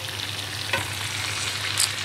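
Beef steaks sizzling in a hot frying pan: a steady frying hiss.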